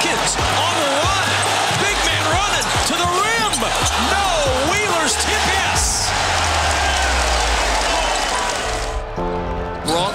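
Basketball game sound over a music track with a steady bass: a ball dribbled on a hardwood court and an arena crowd, which cheers about six seconds in. Near the end the game sound drops out and only the music's held chords remain.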